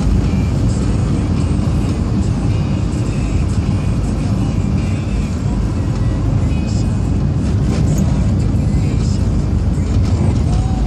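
Steady low rumble of a car's engine and tyres heard from inside the cabin while driving at road speed.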